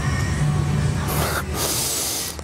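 A man breathing hard while doing a row on TRX suspension straps: a low strained hum through the pull, then his breath hissing out through the mouth in two pushes from about a second in.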